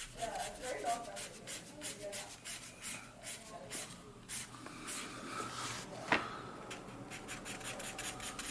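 A Sharpie marker scratching quick hatching strokes onto a brown paper bag, a rapid run of short strokes. A single sharper click comes a little after six seconds in.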